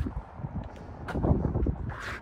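Wind buffeting the microphone: an uneven low rumble outdoors, with a faint murmur about a second in.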